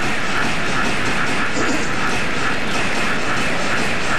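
Baseball stadium crowd: a steady din of many voices from a packed ballpark.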